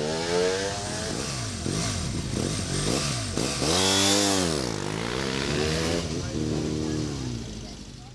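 Motorcycle engines revving up and down through a slalom course, more than one bike heard at once early on. About halfway through one bike revs up and falls away as it passes close by, then the engine note settles and fades near the end.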